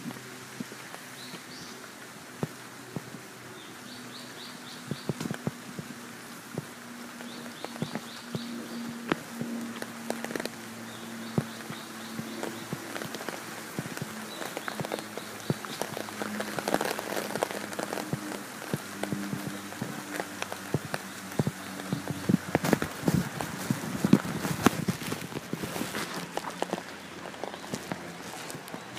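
Footsteps and handling knocks from someone walking with the camera, denser and louder near the end. Underneath are low steady tones, like background music, and a short high rapid chirp repeated every three or four seconds.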